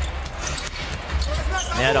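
A basketball being dribbled on a hardwood court, heard over steady arena background noise.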